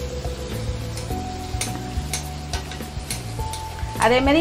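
Sweet appam batter deep-frying in hot oil in a kadai: a steady sizzle with a few sharp pops in the second half. Background music plays underneath.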